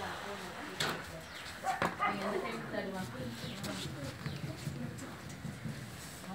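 People talking in a language the recogniser did not catch, with a few short clicks or knocks about a second and two seconds in.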